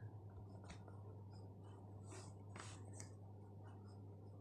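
Near silence: microphone room tone with a steady low hum and a few faint, short, soft rustles.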